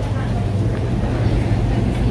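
Steady low hum with an even wash of room noise, no clear events.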